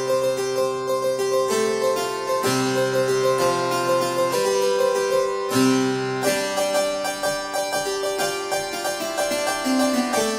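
Sampled harpsichord from IK Multimedia's Philharmonik 2 'Harpsichord 2 Octaves' patch, played as a keyboard improvisation. A quick repeated figure in the upper notes runs over low chords that change every second or two.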